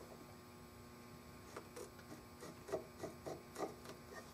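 Pencil drawing on a wooden gunstock blank: a series of short scratching strokes starting about a second and a half in, over a steady low hum.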